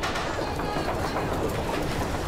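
A crowd of people running together: a dense, steady clatter of many footsteps.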